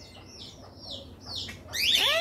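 Birds chirping: a run of short high chirps, each falling in pitch, about three a second, with a louder call sliding up in pitch near the end.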